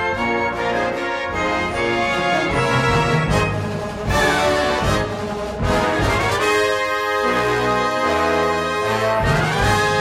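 Concert band playing a bold, brass-led fanfare, with sustained full chords, a few sharp percussion hits and quick rising runs about four seconds in and again near the end.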